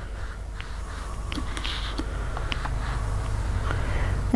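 Handling noise of a small travel iron and a clear plastic bias tool being worked along a padded ironing-board cover: scattered small clicks and faint rustling over a low rumble that slowly grows louder.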